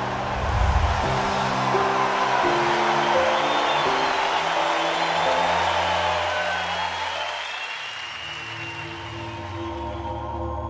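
Background music with sustained chords under a swell of crowd cheering and applause, which fades out about eight seconds in, leaving the music alone.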